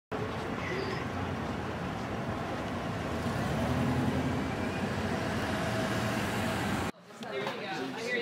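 Street noise: a steady rumble of traffic mixed with indistinct voices. It cuts off suddenly about seven seconds in, giving way to a quieter room with a few murmuring voices.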